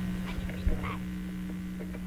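Steady low electrical hum in the gap between songs, the kind of mains hum an amplifier or recording chain gives off, with a few faint clicks and a brief faint sound a little before a second in.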